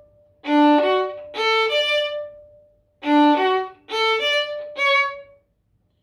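Solo violin playing a short syncopated phrase that climbs a D major arpeggio, played twice. Each time it ends on a held high note.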